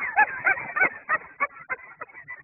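A dog whining and yipping in quick, short, high-pitched calls, several each second, that thin out near the end.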